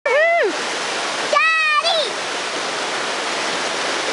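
Fast-flowing brook rushing steadily over rocks and rapids. A child's high voice calls out once at the start and twice more around a second and a half in.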